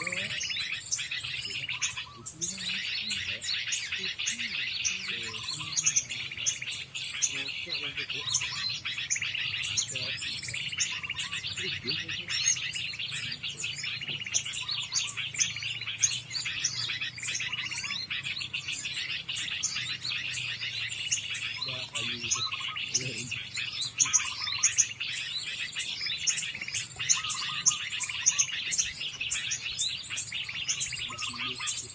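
Many small birds chirping and twittering without a break, a dense high chatter with louder single chirps scattered through it.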